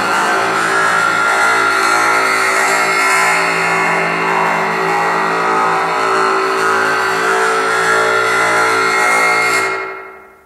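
Dense, sustained electronic synthesizer drone, many steady tones layered together, fading out near the end.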